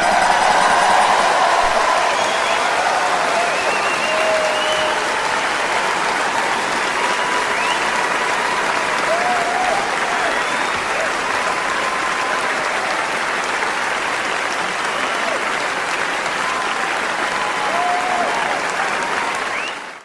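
Audience applauding, a dense steady clatter of clapping with faint whoops of cheering mixed in, fading out at the very end.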